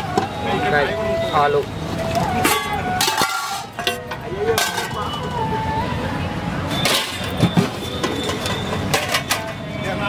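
Street food stall ambience: people talking in the background over general street noise, with several sharp clinks of steel ladles and utensils against steel pots.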